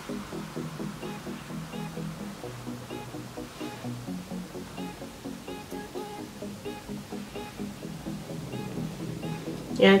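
Background music: an electronic track with a steady beat of short repeated notes over a low bass line, played softly. A woman's voice comes in at the very end.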